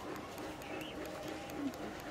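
Faint outdoor ambience with soft bird calls.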